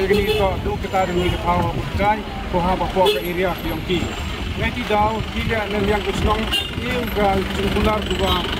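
A man talking continuously, over the steady low hum of an idling engine.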